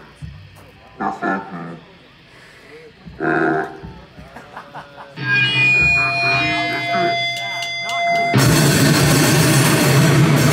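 A live band starting to play. Crowd voices murmur at first. About five seconds in, amplified guitar notes ring out with steady held tones. A second and a half before the end, the full band crashes in loud with distorted guitar and drums, heavy metal in style.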